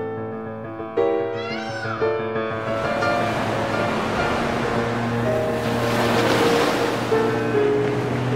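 A peacock calls once about a second in, a short rising-and-falling cry, over background music. From about two and a half seconds in, small waves wash and rush over a sandy shore, swelling and easing, with the music continuing underneath.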